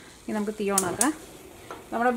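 A woman's voice speaking briefly, then a short quiet pause before the voice resumes.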